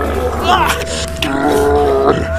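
A man's strained vocal cries during a struggle, over a low, steady droning music score.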